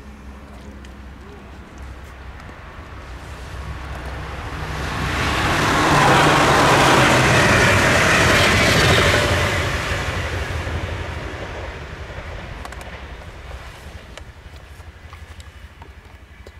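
NS ICM 'Koploper' intercity electric multiple unit passing at speed: a rushing rumble of wheels on rails that swells over a few seconds, is loudest for about three seconds in the middle, then fades away.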